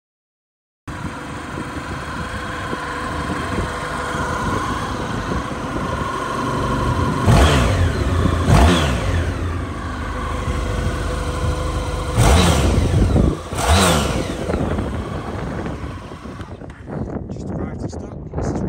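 A 2014 Honda VFR1200F's V4 engine starts to be heard about a second in and runs at idle, then is revved four times in two pairs of quick throttle blips, each rising and falling back to idle. The engine sound falls quieter near the end.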